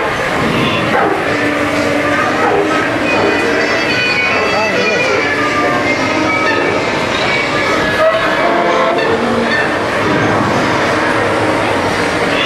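Dark-ride show soundtrack of music and voices playing from the show speakers, over the steady rumble of the suspended ride vehicle running along its overhead rail.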